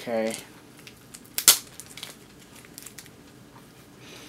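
A short hum from a man's voice at the start, then one sharp crinkle of paper being handled about one and a half seconds in, followed by a few faint ticks.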